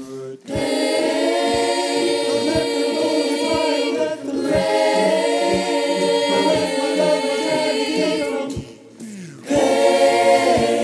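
High school choir singing a cappella in several parts, holding sustained chords, with a low beat about once a second. The sound drops away briefly just after the start and again near the end before the chords come back in.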